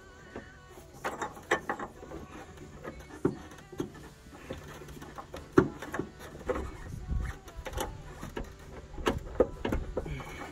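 Irregular clicks, knocks and scrapes of a gloved hand and tools handling metal parts under a car, near the fuel tank straps, with one sharper knock about halfway through.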